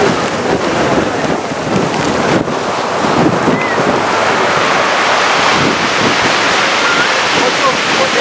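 Strong wind buffeting the microphone over the steady wash of rough surf breaking against a sea wall.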